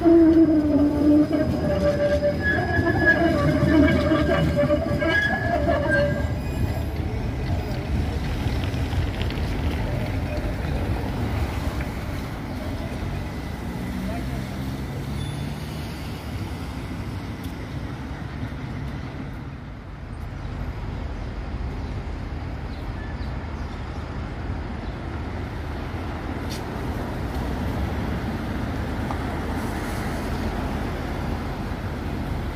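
A 71-623 (KTM-23) tram and city street traffic. A voice carries over them for about the first six seconds, then a steady traffic hum runs on.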